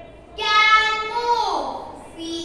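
A child's high voice drawing out a word in a sing-song chant. It holds one pitch for about a second, then slides down.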